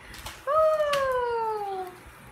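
A long pitched cry, starting about half a second in and falling smoothly in pitch for about a second and a half. A sharp click comes partway through it.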